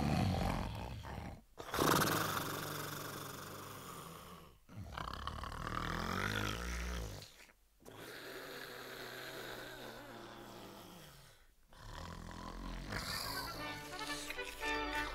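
Slow, exaggerated snoring voiced for the sleeping wolf, in long drawn breaths of about three seconds each with short pauses between.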